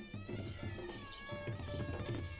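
Traditional festival music: drums beating a repeated rhythm under a high, wavering, reedy-sounding melody line.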